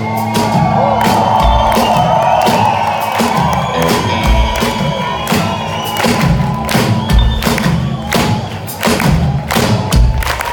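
A live rock band (drum kit, electric guitars, bass) playing the end of a song, with the concert crowd cheering and whooping over it.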